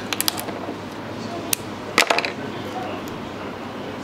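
Light clicks and taps of fishing tackle being handled while a trace is tied: a quick run of small clicks at the start, a lone click, then a sharper cluster about two seconds in, over a steady low room hum.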